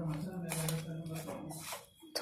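A hand mixing a dry, crumbly gram-flour and semolina mixture with chopped drumstick flowers in a steel bowl: soft scratchy rustles with each stir. A faint, steady low hum runs beneath it and stops shortly before the end.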